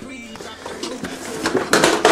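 Faint background music, broken near the end by a short, loud rush of noise.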